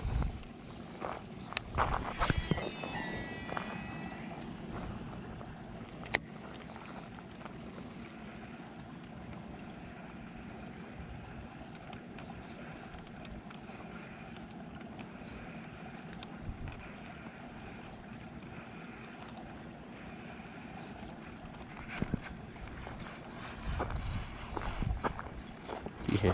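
Steady outdoor rushing noise from open air and water, with a brief whine and a few clicks about two seconds in and a single sharp click a few seconds later.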